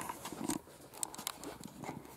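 A few light knocks and clicks of things being handled on a workbench, the loudest knock about half a second in.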